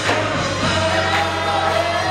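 Men's gospel choir singing, holding a sustained chord over a steady low bass note.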